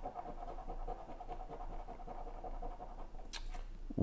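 A coin scratching the coating off a lottery scratch-off ticket in short strokes, over a faint steady whine that fades out near the end, followed by a few sharp clicks.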